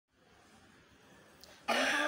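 A woman coughs once, sudden and loud, near the end, after faint room hiss.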